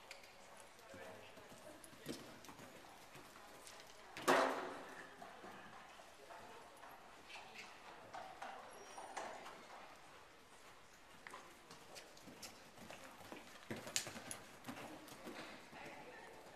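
A horse cantering and jumping on a soft indoor arena surface, its hoofbeats coming as scattered dull thuds. A single loud knock about four seconds in rings on briefly, and a cluster of sharper knocks comes near the end.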